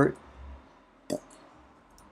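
A single computer keyboard keystroke: one short, sharp click about a second in.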